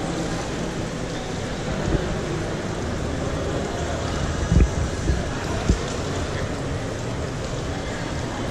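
Indoor swimming-pool hall ambience: a steady, reverberant wash of water noise and faint distant voices. Three short low thumps come about four and a half to six seconds in.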